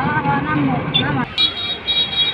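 Highway traffic noise with people's voices in the first half. A high, steady vehicle horn sounds from about a second and a half in.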